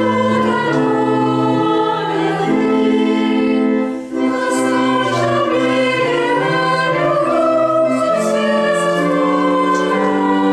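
A church choir singing a Christmas carol with organ accompaniment, held chords changing every second or so. There is a brief break between phrases about four seconds in.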